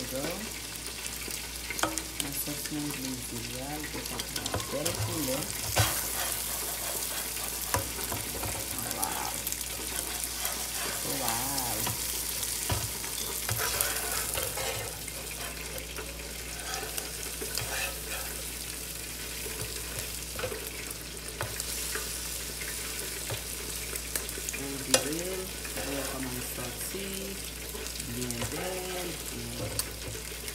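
Eggs with onion and peppers sizzling steadily in an electric skillet. A slotted spatula scrapes and taps the pan as the eggs are stirred and turned, giving many small clicks over the frying.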